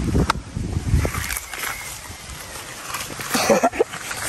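Wind and handling rumble on the microphone, heaviest in the first second, then a lighter outdoor hiss with faint voices near the end.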